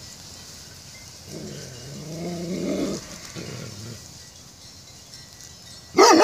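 Herding dog growling: a low growl that starts about a second in and swells for nearly two seconds, followed by a shorter, quieter one, warning off an approaching person.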